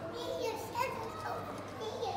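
Children's voices talking and calling out, with no clear words.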